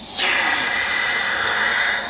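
Can of compressed oxygen (Boost Oxygen) releasing a steady hiss through its mask cap for about two seconds as it is breathed in.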